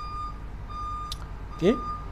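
A repeating electronic beep: one steady high tone sounding three times, about three-quarters of a second apart, over a low hum.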